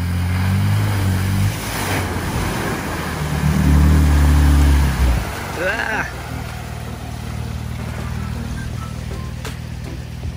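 Toyota Tacoma pickup driving through mud and muddy water, its engine rising under load in two surges, at the start and again around four seconds, over a steady churning of tyres and splashing. About six seconds in there is a short rising whoop.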